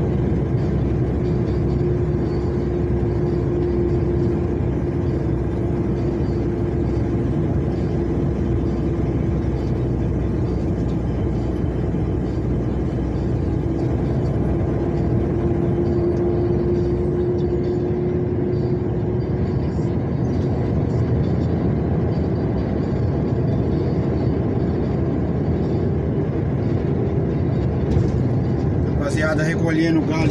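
Steady engine and tyre noise inside a vehicle's cab cruising at highway speed, with a constant hum over a low rumble.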